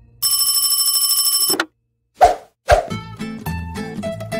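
An old-style desk telephone bell rings once in a fast trill for about a second and a half. It is followed by two short hits, and light plucked-string music starts near the end.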